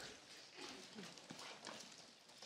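Near silence: faint room tone with a few soft taps and rustles.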